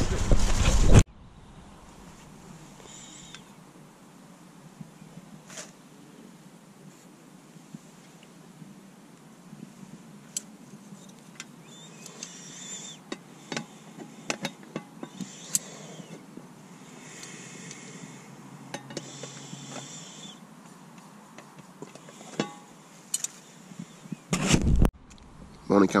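Small clinks and knocks from a Trangia cook set, its pan, lid and gripper handle being handled while breakfast cooks, with a few short spells of soft hiss. A louder bump comes shortly before the end.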